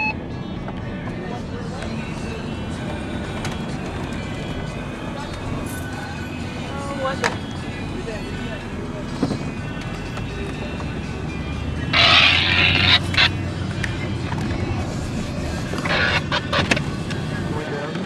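Steady engine and road rumble inside a car's cabin, with two short bursts of hiss about twelve and sixteen seconds in.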